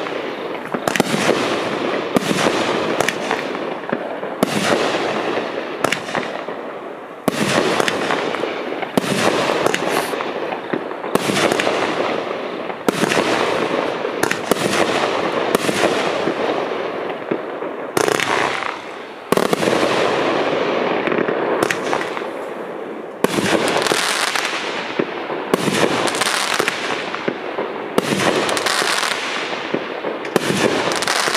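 A 500-gram consumer fireworks cake firing shot after shot, about one a second. Each aerial burst is a sharp bang followed by a fading hiss and crackle, with a brief lull about two-thirds of the way through.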